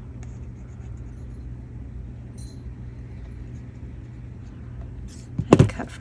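Faint handling sounds of a small paper label and a squeeze bottle of fabric glue over a steady low hum, with a brief loud bump near the end.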